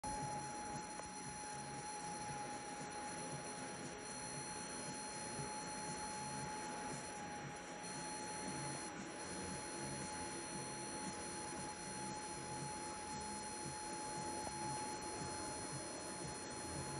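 A thin stream of tap water running steadily into a bathroom sink, a faint even trickle. A steady thin high tone sounds along with it throughout.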